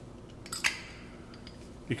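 Two short clinks about half a second in as a two-handled bottle capper is set down onto a metal crown cap on a glass bottle, ready to crimp it.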